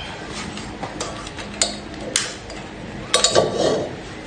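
Metal cookware being handled in a kitchen: a couple of sharp clinks, then a louder cluster of clanks about three seconds in, followed by a brief rush of noise.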